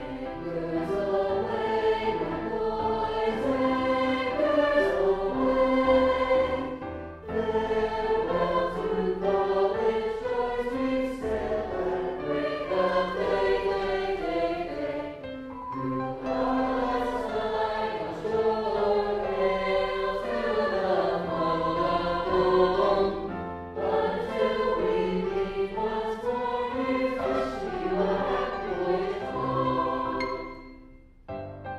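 A high school choir singing a patriotic armed-forces medley, in phrases with short breaks between them.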